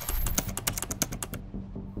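Keyboard typing sound effect: a quick run of key clicks for about the first second and a half, over a low steady hum.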